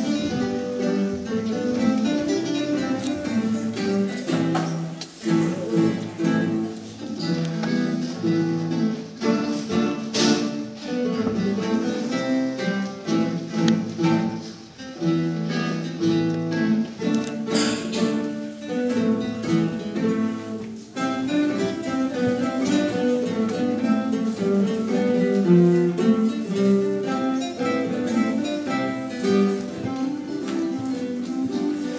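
An ensemble of nylon-string classical guitars playing a piece together, plucked melody and chords running throughout, with sharp accented chords about ten and eighteen seconds in.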